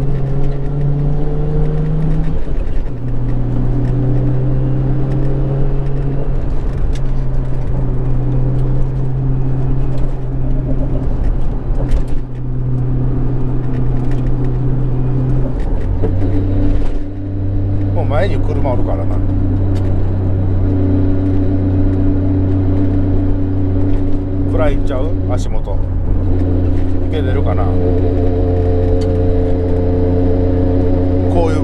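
Nissan Skyline GT-R's RB26 twin-turbo straight-six heard from inside the cabin, pulling steadily under part throttle, its exhaust note quietened by an inner silencer and carrying forward from the rear of the car. The note steps in pitch a few times, about two seconds in, around the middle and near the end, as the manual gearbox is shifted.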